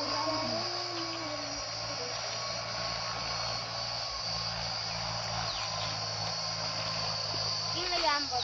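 Steady high-pitched insect drone, with a low steady hum beneath and a brief faint voice in the first second or so.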